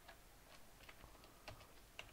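Faint computer keyboard keystrokes: a handful of light, irregularly spaced key taps against near silence.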